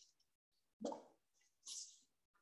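Near silence, broken by two brief faint sounds, one about a second in and a fainter hiss near the end.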